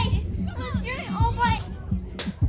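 A young child's excited wordless vocalising over a steady electronic dance beat.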